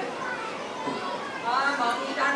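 Speech: a voice speaking dialogue, dropping to a lull with a background of children's voices, then resuming about one and a half seconds in.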